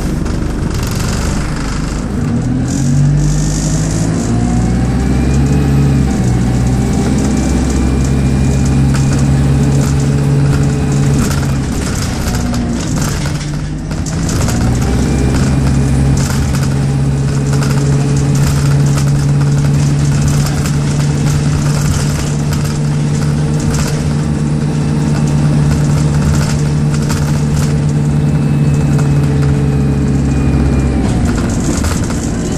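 Stagecoach single-decker bus's diesel engine heard from inside the saloon as the bus drives on, pitch climbing slowly under power, dipping briefly about halfway through as the automatic gearbox changes up, then climbing again and holding steady. Rattles and knocks from the body and road run through it.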